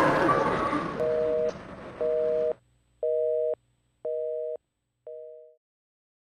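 Telephone busy signal: five beeps about a second apart, each a steady two-note tone lasting half a second, the last one shorter and fading. Background noise under the first two beeps cuts off suddenly after the second.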